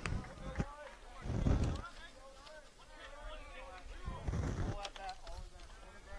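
Faint distant voices calling out on the baseball field between pitches. Two low rumbles rise and fade, about a second and a half in and again past four seconds.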